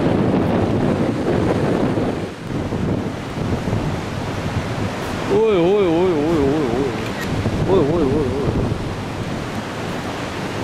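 Strong wind buffeting the microphone over heavy surf breaking on the rocks below. About halfway through, a warbling, wavering tone sounds twice over the wind.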